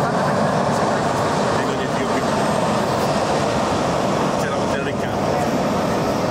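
Jet engines of a taxiing Embraer E-Jet airliner running steadily at low thrust, a constant even noise with no rise or fall.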